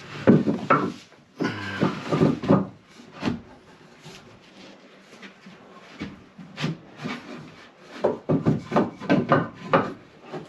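Small wooden blocks knocking and scraping against a plywood bulkhead as they are pushed and wedged into place. Clusters of knocks come at the start and again near the end, with a scrape of wood on wood about two seconds in and single taps between.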